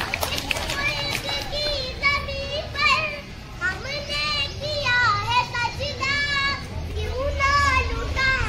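A young boy's voice reciting aloud in a high pitch, with long drawn-out, sing-song syllables.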